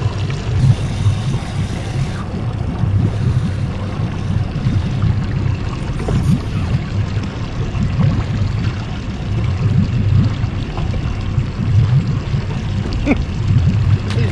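Wind buffeting the microphone as an uneven low rumble, over faint water lapping against a boat hull.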